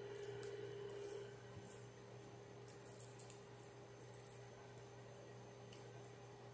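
Near silence: quiet room tone with a faint steady hum and a soft click about three seconds in.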